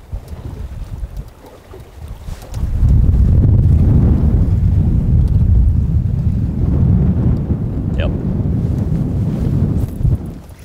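Wind buffeting the microphone: a loud low rumble that sets in about two and a half seconds in and holds steady.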